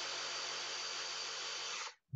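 A vacuum pump connected to the valve of a BodyMap granule-filled positioning cushion running steadily, sucking some air out to firm the cushion partway. It stops shortly before the end.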